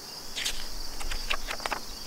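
Steady high-pitched chorus of crickets chirring in the garden, with a few soft clicks and rustles of a picture book's paper pages being turned.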